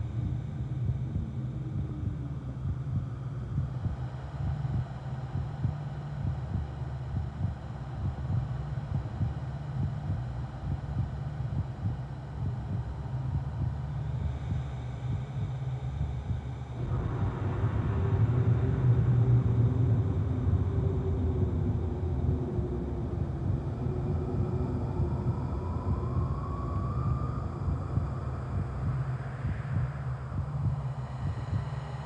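A low, steady rumble that swells about seventeen seconds in, with a faint rising tone near the end.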